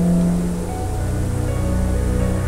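Background music: low, sustained held notes that move to a new chord about a second in.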